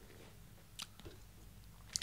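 Quiet room tone with a few faint mouth clicks, one a little under a second in and another just before the end.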